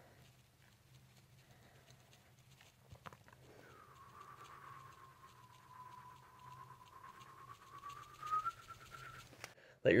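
Breath whistling faintly through the nose as it is pressed between fingers in a nasal adjustment: one thin whistle lasting about five seconds, dipping slightly in pitch and then rising near the end. A faint click comes just before the whistle starts.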